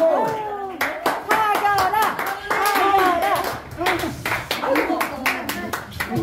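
Scattered hand clapping from a small audience, with several voices talking and calling out over it.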